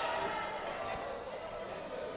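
Voices and crowd chatter in a large hall, with a dull thud of wrestlers' feet or bodies on the mat about a second in.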